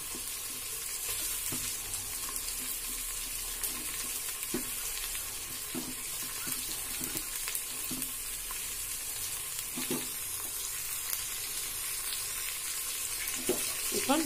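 Sliced red onions frying in a metal pot: a steady sizzle with scattered small crackles.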